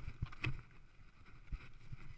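Mountain bike rolling fast down a rocky dirt trail: irregular knocks and thumps as the bike jolts over stones, with a sharper knock about half a second in.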